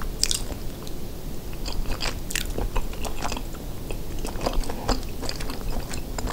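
A person chewing a mouthful of chili cheese rice casserole, with many short, irregular wet mouth clicks.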